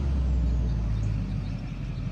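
Pickup truck engine running with a steady low rumble as the truck drives up and pulls in.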